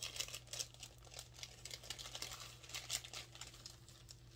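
Clear plastic packaging sleeve crinkling and crackling as it is handled and pulled off a scarf, in quick irregular crackles that thin out near the end.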